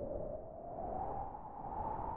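Noise through a resonant Moog-style filter in the Psychosynth software synthesizer, its cutoff sweeping slowly upward to make a rising whoosh, with a slow wavering in level.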